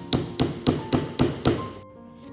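Small hammer tapping a wooden key into the corner of a painting's wooden stretcher: six quick, sharp taps about four a second, stopping near the end.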